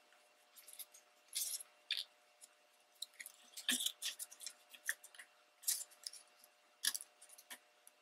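Paper being handled and pressed down: irregular short rustles and soft scrapes of small scrapbook paper pieces, with a few light ticks.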